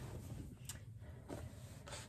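Faint rustling of a cotton fabric remnant being shaken open and spread out flat on a cutting mat, with a few soft brushing sounds over a low steady hum.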